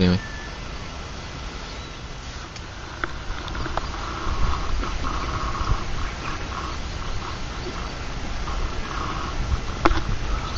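Outdoor lakeside ambience: wind rumbling on the microphone, with faint, distant voices coming and going from about four seconds in. A single click near the end.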